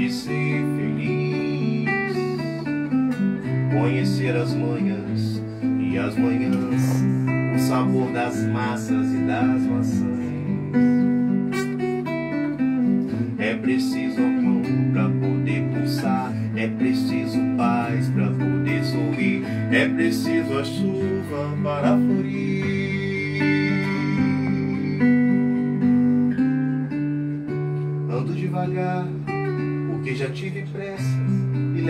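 Acoustic guitar playing an instrumental interlude of a ballad: a picked melody over a bass line that changes note every second or two.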